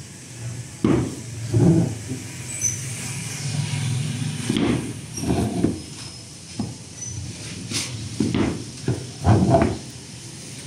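Wooden strips being set and pressed by hand onto a plywood door panel: a series of about six dull wooden knocks and handling sounds, with a low rumble between them about three seconds in.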